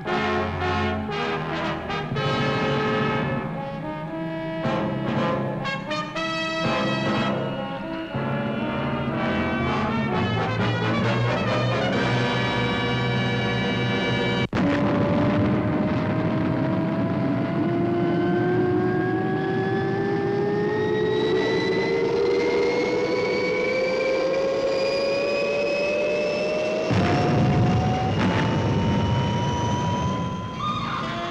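Orchestral title music with brass for about the first half, then, after a sudden cut, a rocket-launch sound effect: one whine that climbs slowly and steadily in pitch over a rushing roar for about fifteen seconds, stepping up once near the end.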